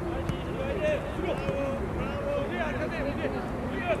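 Players and coaches shouting and calling across an open football training pitch, with a low rumble of wind on the microphone. A couple of sharp knocks come near the start.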